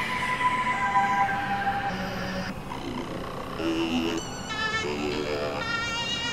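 Experimental electronic synthesizer music: held tones over a noisy wash, which thins out about halfway through. It gives way to stacked warbling, wavering tones in the second half.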